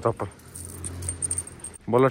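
Light metallic jingling of a heavy steel chain. A person's voice calls out near the end.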